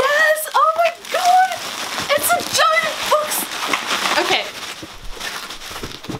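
A woman's wordless, excited high-pitched squeals and gasps, sliding up and down in pitch, crowded into the first few seconds, over a steady rustling noise.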